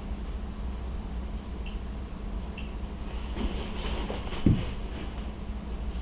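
Faint snips of fine scissors trimming a fly's ram's-wool head, over a steady low hum, with a single soft bump about four and a half seconds in.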